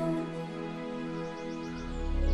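Soft background score of sustained, held chords, with a deep low swell coming in near the end.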